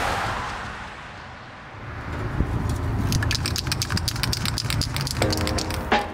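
A whoosh that fades out, then a spray paint can being shaken, its mixing ball rattling rapidly over a low rumble, with music coming in near the end.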